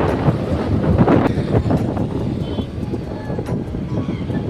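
Wind buffeting the microphone on a moving vehicle, with uneven rumbling road and traffic noise. It eases a little after about two seconds.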